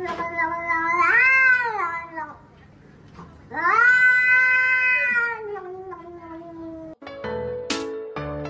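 Grey cat giving two long, drawn-out meows, each swelling up in pitch and then falling away, with a short pause between them. About seven seconds in, light plucked music starts.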